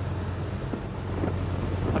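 Old car's engine running at a steady low drone, heard from inside the cabin with wind and road noise. The car has a preselector gearbox.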